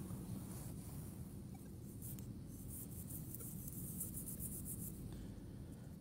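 Faint scratchy rubbing and handling noise as dirt is rubbed off a freshly dug metal token with the fingers, over a low steady hum.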